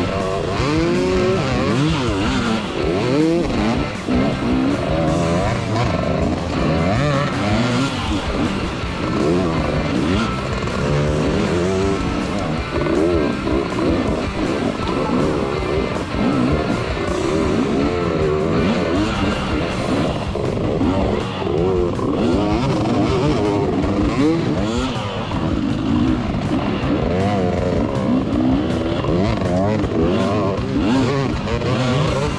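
Off-road motorcycle engine revving hard, its pitch rising and falling over and over as the rider works the throttle over rough, rocky racing ground, with music playing underneath.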